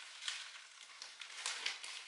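Softbox diffuser fabric rustling as it is handled and spread over the softbox, a run of short, faint, scratchy crinkles.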